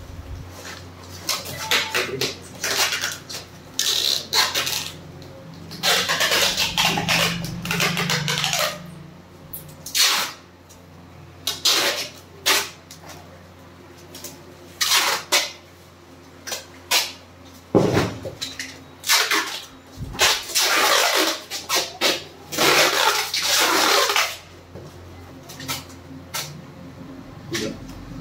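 Brown packing tape being pulled off the roll in a series of long rips, half a second to two seconds each, while cardboard boxes are sealed, with a few sharp knocks among them.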